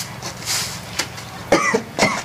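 Grass broom swishing across the ground in two strokes, then about a second and a half in, a pregnant woman's short pained groan as labour pains come on.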